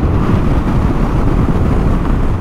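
Kawasaki KLR 650 single-cylinder dual-sport motorcycle cruising on the road, its engine and road noise buried under a steady rush of wind on the microphone.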